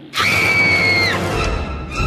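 Cartoon soundtrack: a shrill high note starts suddenly and is held for about a second, dipping slightly as it ends. Music with a deep bass follows.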